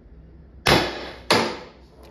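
Two sharp shots about two-thirds of a second apart from a CO2-powered less-lethal marker firing 0.99 g riot balls through a chronograph, its CO2 restrictor drilled to 1.6 mm.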